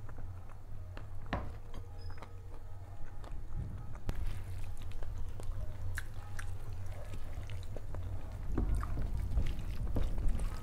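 Dal poured from a small steel bowl onto rice, then a bare hand mixing the wet dal and rice on a steel plate: soft squishing with scattered light clicks of fingers against the plate, over a steady low hum.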